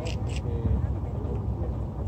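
Low steady rumble with faint voices in the background.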